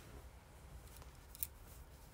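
Quiet low hum with one short, sharp click about a second and a half in and a few fainter clicks around it.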